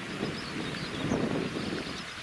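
Wind buffeting the microphone, over the steady rush of a shallow river running over stones.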